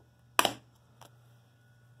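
Plastic DVD keep case handled: one sharp click about half a second in, over a faint steady hum.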